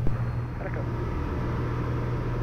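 Steady engine and propeller drone of a Piper PA-32 single-engine aircraft in cruise flight, heard from inside the cabin as an even low hum.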